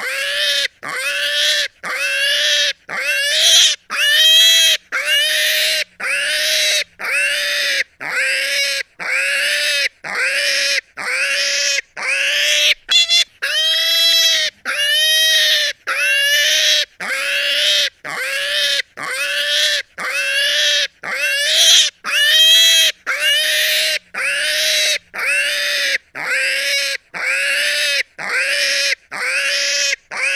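A pig squealing over and over, a little more than one squeal a second. Each squeal is short and shrill, rising and then falling in pitch, and the squeals come at a very even rhythm.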